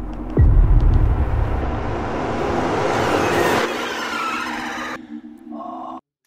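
Cinematic trailer sound effects: a sudden deep boom with a falling sweep about half a second in, then a rumbling, hissing swell that builds and drops away after about three and a half seconds.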